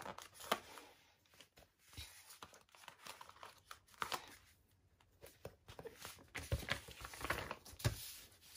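Paper sticker sheet handled and stickers peeled from their backing and pressed onto a magazine page: faint, irregular crinkles and small clicks, with a short lull about halfway through.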